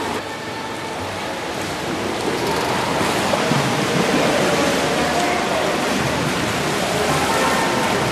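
Steady rushing noise of swimming-pool water, with faint distant voices; it grows a little louder about two seconds in.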